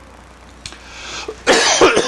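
A man coughs loudly about a second and a half in.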